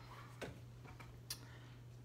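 A few light clicks and taps as a tablet is handled and held up, over a low steady hum.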